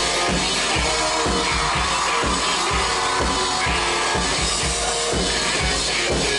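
Live rock band playing walk-on music: electric guitar over a drum kit keeping a steady beat.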